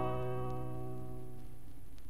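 Final strummed acoustic guitar chord of the song ringing out and fading away, leaving only a faint steady hiss.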